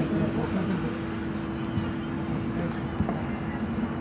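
Subway station ambience: a steady hum with one constant tone over dense background noise, with indistinct voices mixed in.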